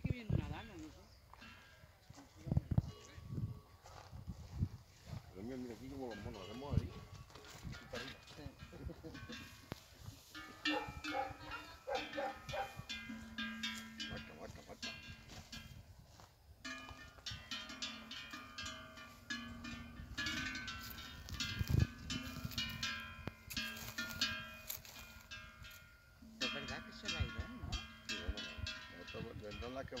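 Cattle bells (cencerros) ringing and clanking irregularly as the cattle move about and feed, dense from about ten seconds in. Faint voices in the first part.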